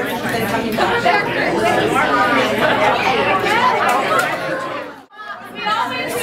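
A roomful of people talking over one another, many voices at once with no single one standing out. The sound cuts out abruptly about five seconds in, then the chatter resumes.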